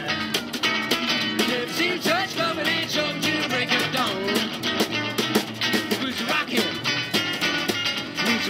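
A live jump-blues / rock and roll trio of electric guitar, snare drum played with sticks and upright double bass playing a fast number, with the players singing along.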